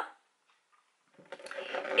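A woman's voice trails off, then about a second of dead silence, likely an edit cut. Faint rustling and small clicks build up near the end, just before she speaks again.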